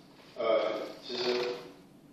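A man's voice: two short utterances, each about half a second long, with a brief pause between them.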